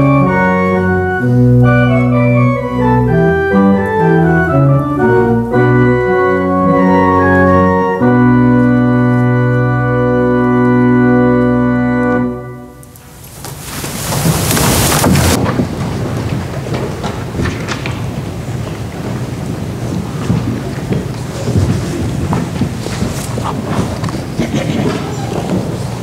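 Church organ playing the closing chords of a piece and holding a final chord that cuts off about twelve seconds in. Then the congregation applauds steadily.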